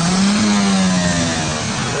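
Car engine revved once, its pitch rising and then easing back down over about a second, over loud background noise.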